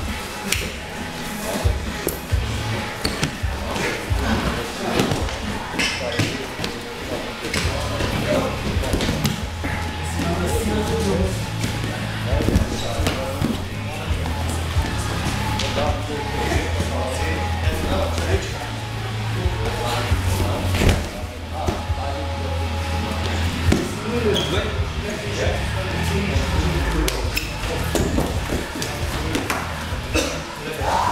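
Music with a steady bass line playing in a large room, over repeated thuds and scuffs of two wrestlers grappling and hitting a wrestling mat.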